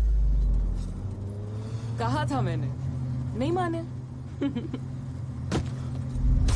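Volkswagen Type 2 van's air-cooled engine running with a steady low drone as it drives off. Two short voice calls come about two and three and a half seconds in, and there is a sharp click near the end.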